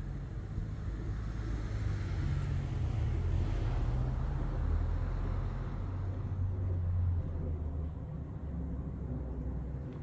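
Jet aircraft passing high overhead: a steady low rumble that swells through the middle and eases off about seven seconds in.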